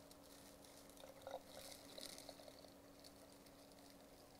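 Faint trickle of distilled water poured from a glass beaker into a small nutrient-concentrate bottle, with a few light splashes and ticks.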